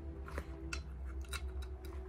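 Light scraping and a few scattered clicks as a toothbrush and a small metal tool work over small BGA chips in a plastic bowl.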